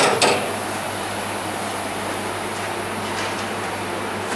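A metal clank, twice in quick succession at the start, from the steel cage gate of a hydraulic staff lift being handled, then the steady hum of the cold wine cellar's air conditioning.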